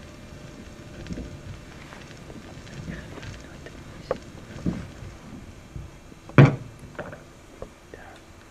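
Sparse clicks, scrapes and knocks from gramophone records and a record player being handled in an improvised performance. One loud, briefly pitched thump comes about six and a half seconds in.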